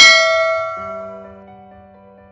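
Bell chime sound effect, struck once and ringing out, fading away over about a second and a half, with soft background music under it.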